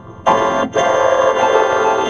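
Cartoon soundtrack music run through a stack of pitch-shifting effects, heard as a dense, buzzy chord of many layered copies. It starts suddenly about a quarter second in after a brief quiet gap, with a short drop-out a little later.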